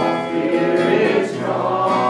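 A gospel song: singing with acoustic guitar accompaniment, carried on steadily without a break.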